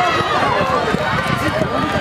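Spectators in the stands shouting and calling out at once, many voices overlapping so that no single words come through, cheering on the runners.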